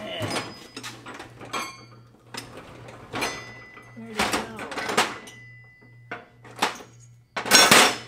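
Rummaging through metal tool-chest drawers: drawers sliding and small metal tools clattering and knocking together in irregular bursts, with the loudest clatter near the end.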